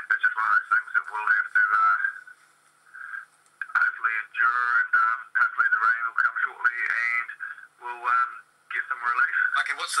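Speech only: a man talking in an interview, played back through a computer's speaker and sounding thin and narrow. There is a pause of about a second a little way in.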